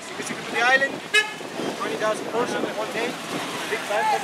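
Busy street traffic, with cars and a motor scooter passing, under the voices of people talking nearby; a short toot sounds about a second in.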